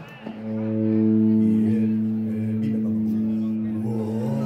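A live band's amplified instrument holding one steady low note with a rich stack of overtones, coming in about half a second in and sustained like a drone.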